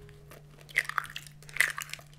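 Eggs being cracked and their shells pulled apart by hand over a glass mixing bowl: two bursts of small crackling clicks, about a second in and again around the middle.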